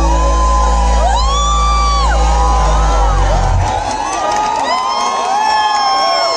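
Loud live concert music over the PA with a deep bass, which stops about three and a half seconds in as the song ends. A crowd whooping and cheering carries on over it and after it.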